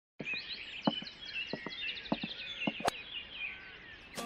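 Birds chirping in a quick run of short sliding notes, several a second, thinning out toward the end, with a few soft knocks underneath.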